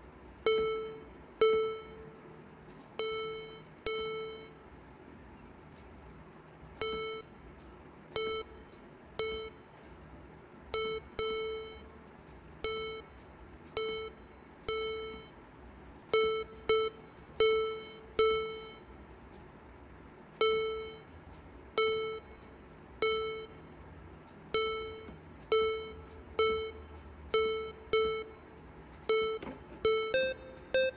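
A single synth note, A4, triggered again and again on the Serum software synthesizer with its compressor switched on: short, bright plucks at the same pitch, each dying away in under a second, at uneven intervals with a few short pauses.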